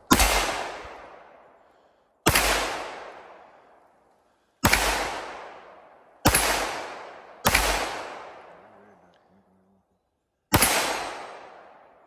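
Six shots from a 9mm Canik pistol, fired slowly at uneven intervals of one to three seconds. Each shot leaves a long echo that dies away over about two seconds.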